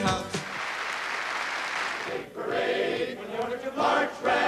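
Applause for about two seconds, then a group of voices starts singing together.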